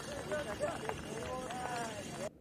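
Quiet voices of people talking, over light outdoor background hiss.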